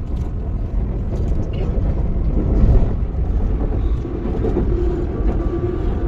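Inside a crowded BTS Skytrain carriage, the electric train runs with a steady low rumble. A humming tone joins about four seconds in.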